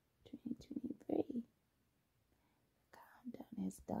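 A woman's voice speaking softly, close to the microphone, in two short phrases with a pause of about a second and a half between them.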